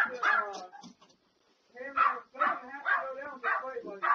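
A dog barking repeatedly, in two bouts: one at the start, then after a pause of about a second a run of barks that carries on.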